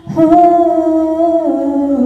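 A girl singing solo into a handheld microphone with no accompaniment, holding long notes and stepping down in pitch about one and a half seconds in.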